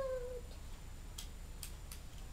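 A short meow-like pitched call, falling slightly and fading within the first half-second, then three light clicks of a plastic Transformers Bumblebee toy's parts being clipped together.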